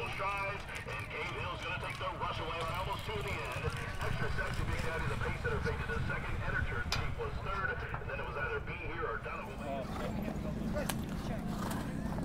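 Track announcer's race call over the public-address loudspeakers, with a steady low rumble underneath. About ten seconds in it gives way to a steadier low hum.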